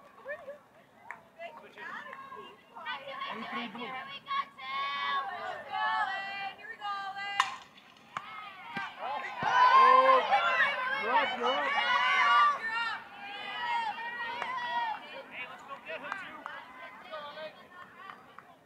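Players, coaches and spectators calling out and shouting at a fastpitch softball game, with one sharp knock about seven seconds in, then a louder burst of overlapping shouts for a few seconds as the play runs.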